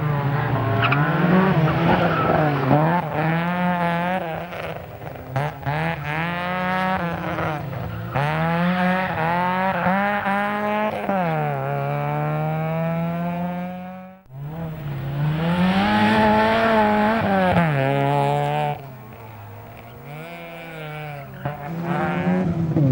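Group N Vauxhall Astra GSi rally car's engine revving hard, its pitch climbing and dropping over and over as it is driven flat out through corners. The sound breaks off for a moment about two thirds of the way through, then goes on, and turns quieter near the end.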